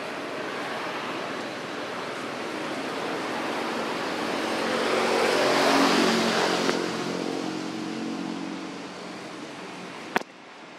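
A motor vehicle passing: a rushing engine and road noise that grows, is loudest about six seconds in, then fades away.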